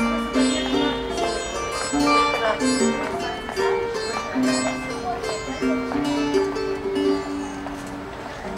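Bandura, a Ukrainian plucked string instrument, played solo in an instrumental passage between verses: a melody of plucked notes over ringing strings.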